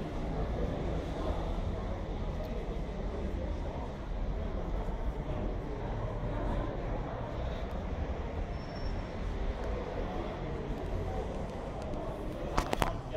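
Steady low rumbling background noise, loudest in the bass, with no distinct events.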